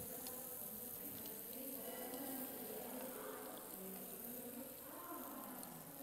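Razor clams sizzling faintly in hot olive oil in a frying pan, a steady soft hiss over a faint background murmur.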